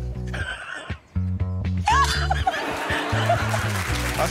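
Background music with a repeating low bass line that drops out briefly about a second in, with laughter over it from about two seconds in.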